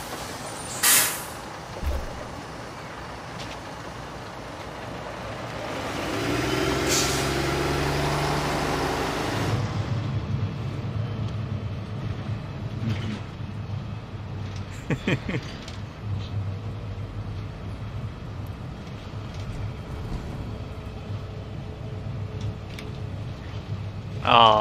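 Single-decker bus at a stop: a sharp hiss of compressed air about a second in and another about seven seconds in, then the engine grows louder as the bus pulls away. It settles into a steady low drone heard from inside the bus.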